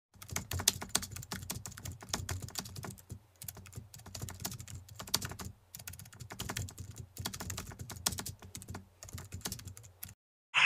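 Keyboard typing: rapid runs of key clicks, broken by short pauses about three and five and a half seconds in.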